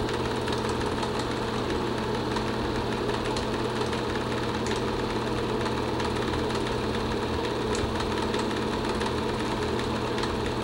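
Film projector running: a steady mechanical running noise with a constant hum and faint, even ticking.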